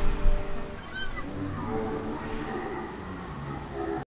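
Last acoustic guitar chord dying away within the first second, with two low thumps at the very start; then, about a second in, a short high cry that rises and falls in pitch.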